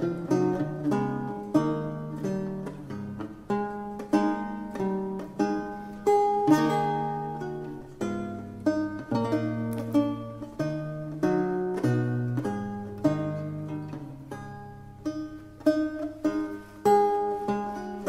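Solo lute music: a polyphonic Renaissance piece of plucked notes that ring and die away, with a moving bass line beneath the upper voices.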